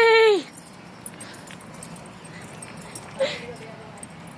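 A person's drawn-out, wavering shout of "yeah" dies away about half a second in. After that there is low background, broken by one brief call about three seconds in.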